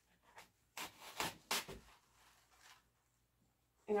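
Artificial flower stem and plastic greenery rustling and rubbing as the stem is pushed into the centre of a wicker basket arrangement: a few short rustles, about a second in.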